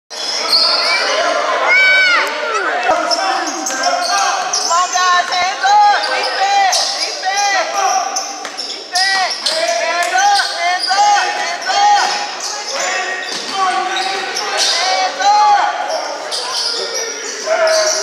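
A basketball dribbled on a hardwood gym floor, with many short, high squeaks from players' sneakers as they run, cut and stop. The sound echoes in the large gym.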